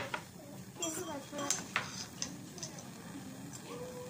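Background chatter of several people with a handful of sharp clinks, like glass or metal lab equipment being knocked or set down.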